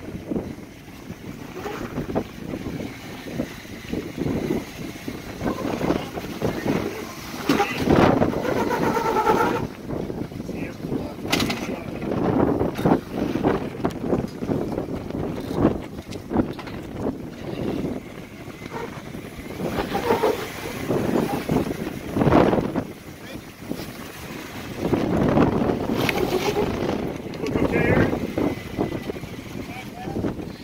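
Jeep Wrangler Rubicon's engine running at low speed as it crawls over rock ledges, with indistinct voices now and then.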